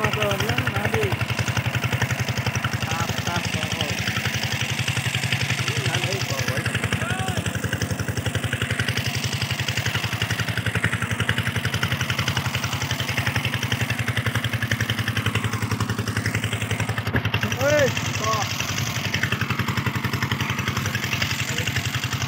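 A small engine running steadily with a fast, even pulse, and faint voices now and then.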